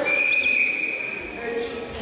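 Karate referee's whistle: one long, steady blast lasting nearly two seconds, calling for the judges' flag decision at the end of the bout.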